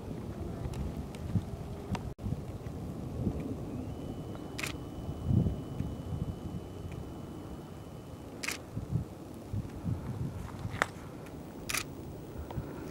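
Wind rumbling on the microphone, with a few sharp clicks of a Nikon D300S DSLR's shutter firing, the two clearest about four seconds apart. A faint steady high tone runs between those two clicks.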